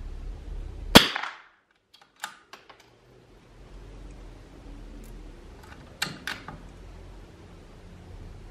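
A single shot from a .22 rimfire bolt-action target rifle firing Lapua Long Range ammunition about a second in, a sharp crack with a short tail. The bolt is then worked, with a few metallic clicks a second or two later and two more about six seconds in.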